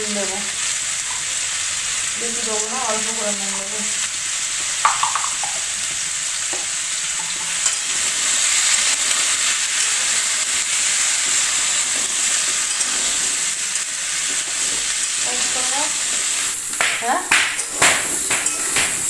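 Small whole potatoes frying in oil in a steel wok, a steady sizzle, with a spatula scraping and knocking against the pan near the end as they are stirred.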